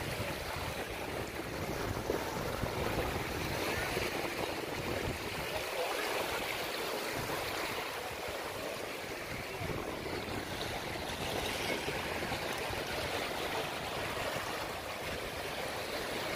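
Small sea waves lapping and washing over a shallow, stony shore: a steady watery wash that swells and eases with each wave.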